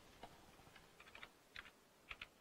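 Faint keystrokes on a computer keyboard: a few separate key clicks, irregularly spaced, as a comment's two slashes are typed.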